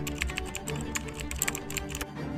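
Computer-keyboard typing sound effect: rapid, irregular key clicks over steady background music.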